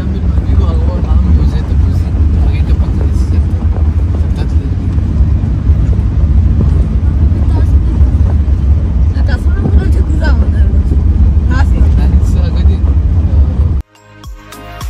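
Loud, steady low rumble of wind and road noise while riding in the open bed of a moving Toyota Hilux pickup, with faint voices under it. It cuts off suddenly near the end.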